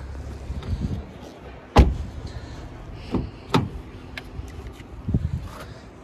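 Car doors being handled on a Skoda Octavia: a solid thud about two seconds in, the loudest sound, then two sharper knocks and a dull knock near the end as a door is worked and opened.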